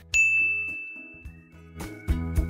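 A single bright ding, a chime sound effect, struck just after the start and ringing out over about a second. Soft background music runs underneath, with a few short clicks near the end.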